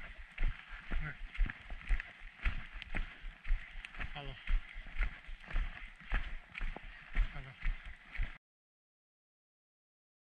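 A hiker's footsteps on a dirt trail, about two dull thuds a second, picked up through a carried action camera over a steady hiss. The sound cuts off to silence about eight seconds in.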